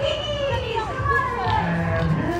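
Several children's voices at once, kids chattering and calling out as they play.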